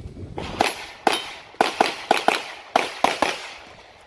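Pistol shots at a USPSA stage: about nine rapid shots, several in quick pairs, starting about half a second in and ending a little after three seconds.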